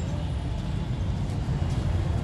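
Steady low rumble of an idling engine, even and unbroken.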